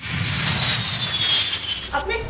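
Four-engine jet airliner flying low with landing gear down: a steady rush of jet engine noise over a low rumble, with a high whine that slowly falls in pitch.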